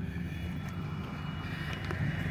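Steady low rumble of an idling vehicle engine, with a few faint light clicks.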